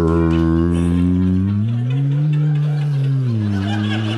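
A man's imitation of Tibetan and Mongolian throat singing ('belly music'): one long low vocal drone with overtones ringing above it. The drone's pitch rises about halfway through and sinks back near the end.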